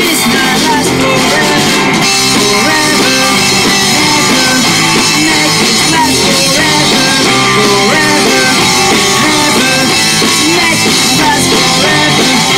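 Live pop-punk band playing loudly on electric guitar, bass guitar and drum kit, a steady full-band sound with melodic lines bending over the beat.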